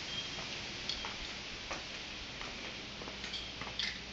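Faint footsteps and phone-handling noise while walking: light irregular ticks and clicks, about one every half second to second, over a steady hiss, with a few brief faint high chirps.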